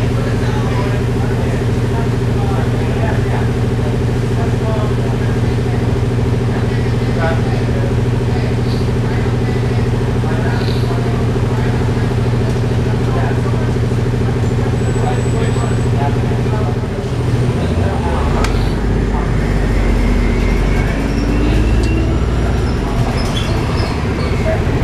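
The Cummins ISB diesel of a 2007 Orion VII hybrid bus (BAE Systems HybriDrive) running loud and steady, heard from inside the cabin. About 17 seconds in, its note changes and a rising whine from the hybrid electric drive comes in as the bus gets moving.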